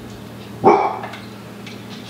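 A dog barks once, a single short, loud bark about half a second in.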